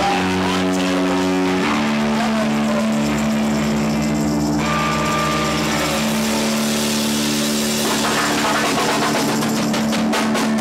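A live rock band sustaining a loud drone of held amplified notes, led by a keyboard, over a noisy wash. The held notes shift pitch about two seconds in and again around six seconds in.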